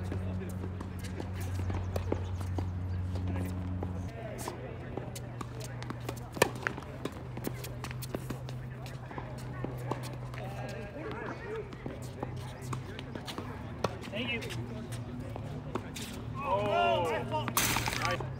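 Tennis balls struck by rackets during doubles play on a hard court: scattered sharp pops, the loudest about six seconds in, with footsteps between, over a steady low hum. Voices call out near the end.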